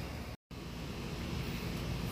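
Steady outdoor background noise, an even hiss with a low hum, cut off by a brief dead-silent gap about half a second in where two clips are joined.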